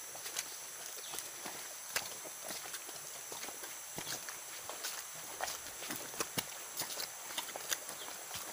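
Hikers' footsteps on a steep forest trail, irregular crunches, snaps and scuffs in dry leaf litter and twigs, over a steady high-pitched hiss.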